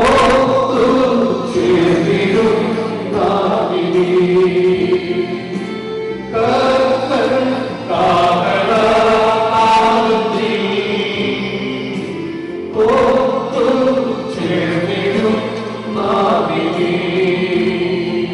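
A group of voices singing a funeral hymn together, line by line, with short pauses between phrases.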